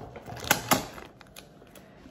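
Soft plastic packet of wet wipes being handled, with two sharp clicks about half a second in and a few lighter ticks.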